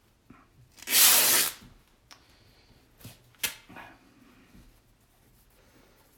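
A piece of scrap fabric ripped by hand: one short, loud tearing rip about a second in, followed by a couple of faint light clicks and rustles.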